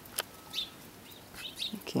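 A few short, high chirps from small birds, with a single click just after the start.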